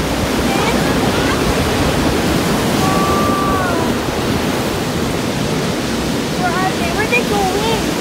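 Ocean surf breaking and washing over a rocky shore, a steady rushing wash. Faint voices come in near the end.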